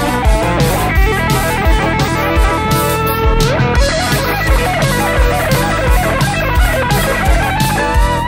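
1980s rock recording digitised from magnetic tape: an electric guitar lead line plays over bass and a steady drum beat, sliding up to a new note about halfway through.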